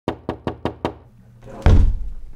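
Five quick knocks on an interior door, then a louder low rush and thump near the end as the door is pulled open.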